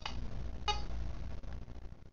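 A short electronic beep from an Android phone about two-thirds of a second in: the Skyvi voice-assistant app's prompt tone, signalling that it is listening for a spoken question. Under it runs a low steady hum that starts with a click.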